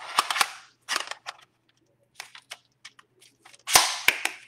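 Hard clicks and knocks of the micro head being slid onto and fitted to a ForenScope forensic imaging tablet, in several short clattery bursts with the loudest clack near the end.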